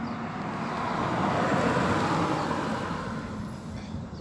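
A vehicle passing along the street, its engine and tyre noise swelling to a peak about two seconds in and then fading away.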